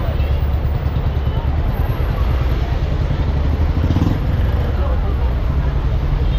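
Busy street noise: motor traffic and the chatter of a crowd over a loud, steady low rumble.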